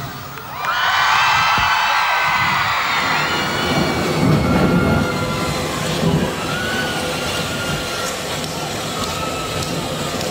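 Large concert crowd cheering and screaming between songs. The high-pitched screaming swells about a second in, then holds and slowly eases.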